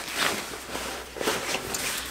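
Fabric of a jacket rustling as it is pulled off the shoulders, a few brief brushing swishes.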